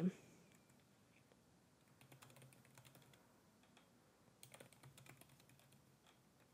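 Faint typing on a computer keyboard, in two short runs of keystrokes: one about two seconds in and another a little past the four-second mark.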